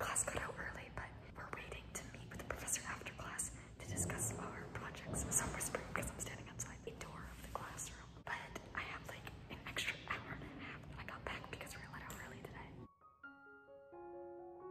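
A woman whispering quietly, with soft breathy syllables and no voiced pitch. Near the end this cuts off and gentle piano music begins.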